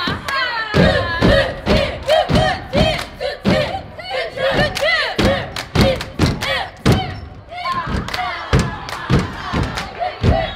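A cheerleading squad shouting a chant in unison over a steady beat of foot stomps and hand claps, about two to three beats a second.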